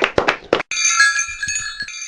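Hand clapping that cuts off abruptly under a second in, followed by a shimmering chime sound effect of several steady, high, bell-like tones ringing together.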